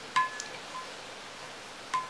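Paintbrush knocking against a glass jar of rinse water: two sharp clinks with a short ringing tone, one just after the start and one near the end, with a fainter tap in between.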